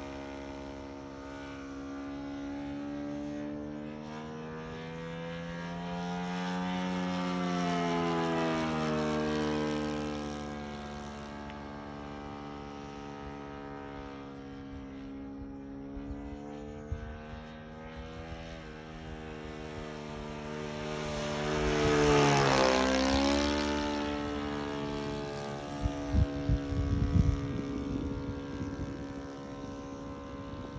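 Saito 125a four-stroke glow engine on a radio-controlled Christen Eagle II biplane, turning a 16x6 propeller as it flies overhead. The engine note rises and falls as the plane manoeuvres, and there is one louder close pass about two-thirds of the way through where the pitch drops. A few low rumbling knocks hit the microphone near the end.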